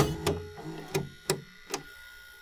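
Front-loading Sanyo videocassette recorder's stop button pressed with a sharp click, followed by four lighter mechanical clicks over the next two seconds as the tape transport stops. A faint hum dies away underneath.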